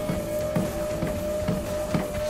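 Background music with a steady drum beat of about two strikes a second, over a held steady tone.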